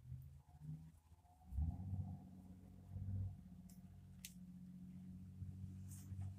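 Faint handling sounds of hands working a flexi hair clip into long hair, with a few small clicks as the clip is fastened. A low steady hum comes in about a second and a half in.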